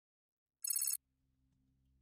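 A brief, high, rapidly pulsing ringing trill from an editing sound effect, lasting about a third of a second and starting just over half a second in. A faint low hum follows it.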